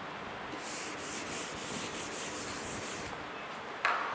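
A whiteboard being wiped clean: a steady rubbing hiss across the board lasting about two and a half seconds. A light knock follows just before the end.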